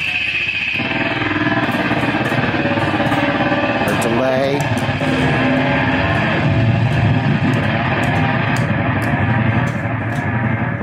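Noise guitar through Death By Audio effects pedals: a loud, dense distorted drone with oscillating squeals. As the pedal knobs are turned, the pitch wavers and sweeps, most clearly about four seconds in.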